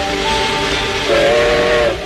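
Steam locomotive whistle over a loud hiss of steam. A chord of a few steady tones sounds in the second half and cuts off suddenly near the end, with music underneath.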